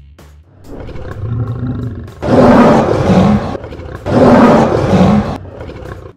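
Two lion roars, each a little over a second long, over a low rumble that builds from about half a second in.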